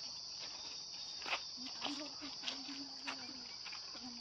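Steady, high-pitched chirring of crickets, with footsteps crunching on dry leaves and soil at walking pace.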